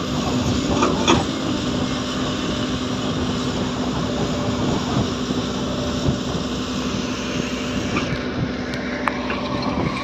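Komatsu PC130 hydraulic excavator's diesel engine running steadily under load while it digs and swings, with a few sharp knocks about a second in and near the end.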